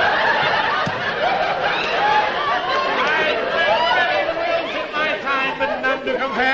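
Several people laughing at once, giggles and chuckles overlapping without a break.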